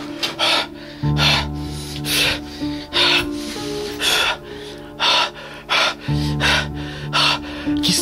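A man breathing hard in short, quick gasps, about two a second, over background music with a low sustained drone that swells twice.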